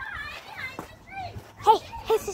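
Children's voices calling out and talking over one another, high-pitched, with the loudest call near the end.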